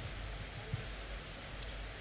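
Quiet room tone: a faint steady hiss with a low hum underneath, and one small click just under a second in.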